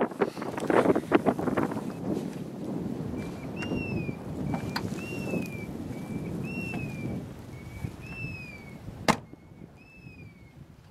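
Wind gusting on the microphone at first, then a bird's two-note whistled call repeated four times, about every second and a half. Near the end comes a single sharp thump of a car door shutting.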